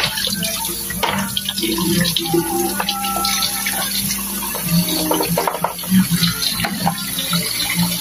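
Tap water running from a kitchen faucet into a sink while dishes are washed by hand, with frequent short clinks and knocks of plates and pans.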